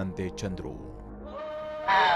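Speech that stops after about half a second, then held musical notes, and a loud, quavering wailing voice that sets in near the end, a cry of grief from a film soundtrack.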